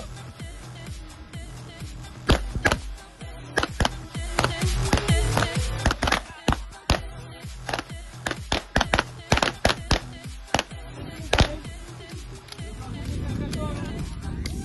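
A line of pistols firing on an outdoor range: many sharp shots from several shooters, irregular and sometimes overlapping, starting about two seconds in and stopping about two seconds before the end. Background music plays under them.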